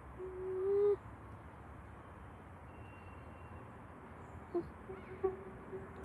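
Distant whistle of the narrow-gauge steam locomotive 99 7243: one short, steady blast of under a second near the start, swelling as it sounds, with a few faint short tones at the same pitch near the end.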